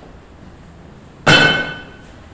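A single sharp metallic clang about a second in, ringing for about half a second, from the butcher's steel gear being struck.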